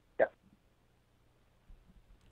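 A single short spoken "yeah" heard over a telephone line, thin and cut off at the top, followed by near silence.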